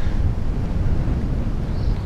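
Wind blowing across the camera's microphone: a steady, low noise with no distinct events.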